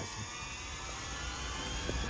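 Steady outdoor background: a faint, even insect drone with a low rumble beneath it.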